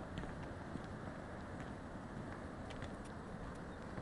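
Faint, irregular footsteps on a cliff path over a steady hush of distant surf.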